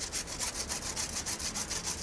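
Hand saw cutting into a tree trunk with quick, even back-and-forth strokes.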